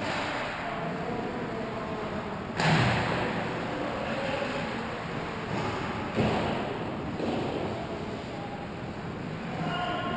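Indoor ice hockey rink during play: the steady hollow noise of the arena with faint distant voices and skating, broken by two sudden louder noises, near three seconds in and about six seconds in.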